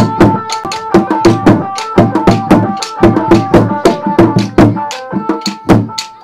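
Fast hand-drumming of traditional Somali Bantu sharara music, about six strikes a second, with a steady held melodic line over it.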